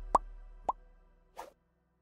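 Two short, rising-pitched cartoon pop sound effects about half a second apart, then a brief whoosh, over a background music bed that fades out.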